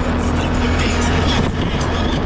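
An ATV engine running steadily at low speed as the quad crawls along a rough dirt trail, a constant low hum with scattered knocks and rattles from the bumpy ground.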